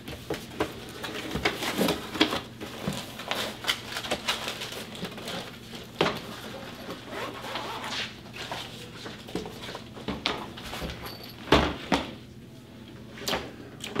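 Handling sounds of a cardboard gun box and a padded pistol pouch being opened and a revolver drawn out. Irregular rustles, clicks and light knocks of boxes on a glass counter, with a sharper knock late on.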